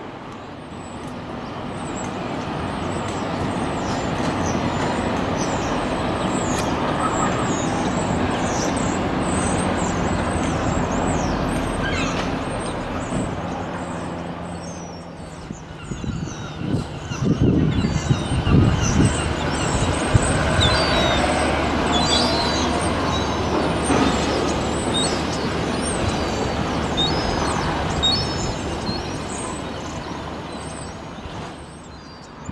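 Road traffic noise, with vehicles passing that swell and fade. There is a louder stretch of low, uneven rumbling about seventeen to twenty seconds in.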